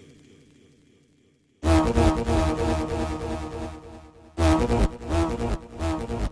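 Turntable scratch performance: a sample fades away, then about a second and a half in a loud, low droning tone with a wavering pitch drops in hard on vinyl and is chopped off and back on several times in quick cuts on the mixer.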